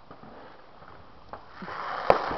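Faint hiss of fireworks with one short puff about two-thirds of the way through, then a louder hissing rush building near the end.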